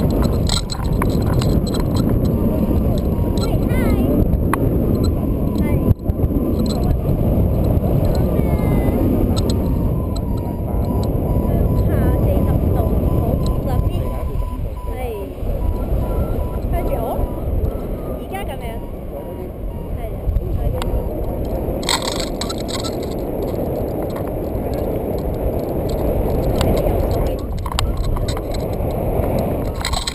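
Wind rushing over and buffeting the camera microphone in paragliding flight: a steady, heavy rumble that dips a little in the middle.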